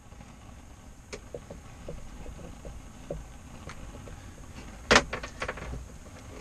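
Hand-handling noises as a fish is unhooked: faint clicks and rustles over a low steady rumble, with one sharp knock about five seconds in.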